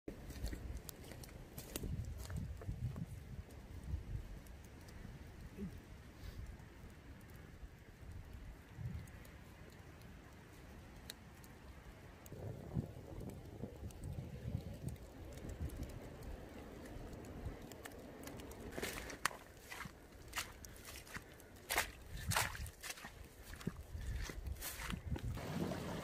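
Faint outdoor woodland ambience: a low, uneven rumble of wind gusting on the microphone, with scattered crackles and clicks that come thicker in the last several seconds.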